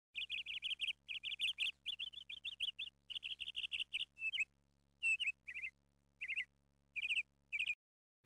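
Bird chirping: quick runs of short, high chirps for about the first four seconds, then scattered single chirps, cutting off abruptly near the end.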